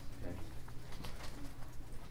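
Room background in a meeting room: a steady low hum, with a brief faint murmur of voices near the start and a few small clicks.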